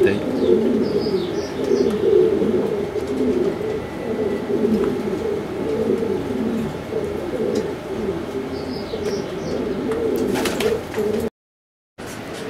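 Several domestic pigeons in a loft cooing continuously, their overlapping low coos filling the air, with a few brief high chirps. The sound cuts off abruptly near the end.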